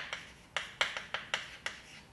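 Chalk writing on a blackboard: a quick run of about eight sharp, irregularly spaced taps as the chalk strikes the board on the letter strokes.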